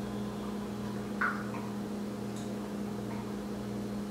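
Steady low electrical hum, with one faint short sound about a second in.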